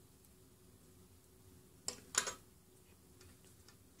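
Two short clicks close together about halfway through, from a metal crochet hook being set down on a wooden tabletop; otherwise quiet.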